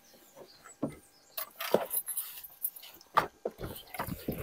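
A few short, faint knocks and rustles as people shuffle and climb through an open rear door into a car's back seat.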